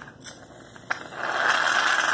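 A short click, then an aerosol can of shaving cream hissing steadily as foam is sprayed out, starting a little after a second in.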